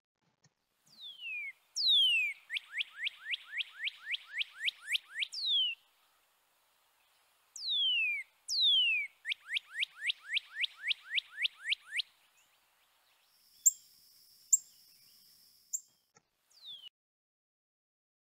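Northern cardinal singing two songs. Each opens with long down-slurred 'cheer' whistles and runs into a rapid series of about a dozen short down-slurred 'birdie' notes, roughly four a second. Near the end there is a faint high steady tone with a few sharp clicks, then one more down-slurred note.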